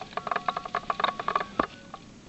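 A rapid, pulsing whistle from the small homemade cannon tumbling as it falls back from high in the air, stopping about one and a half seconds in, followed by a single thump.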